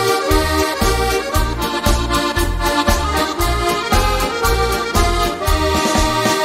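Instrumental break of a Dutch polka song: an accordion plays the melody over an oom-pah bass beating about twice a second.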